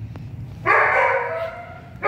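Dog giving one long, drawn-out bark, starting just under a second in and fading over about a second.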